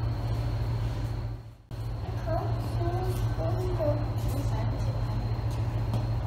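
A steady low mechanical hum, with faint voices talking over it for a couple of seconds. The sound cuts out almost completely for a moment about a second and a half in.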